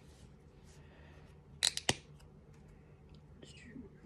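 Plastic flip-top cap of a micellar cleansing water bottle snapped open: three sharp clicks in quick succession a little under two seconds in, amid faint handling of the bottle and cloth.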